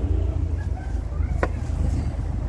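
Low, uneven rumble of wind buffeting the microphone, with a single sharp click about one and a half seconds in.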